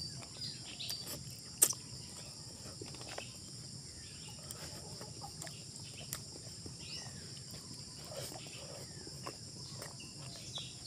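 Close-up eating sounds: chewing, lip-smacking and light clicks as fingers pick apart catfish adobo, with one sharp click about one and a half seconds in the loudest. Behind it there is a steady high insect drone and a few bird calls, clearest around seven to eight seconds.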